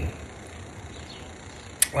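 A short pause with faint background hiss, then a single sharp click near the end, just before speech resumes.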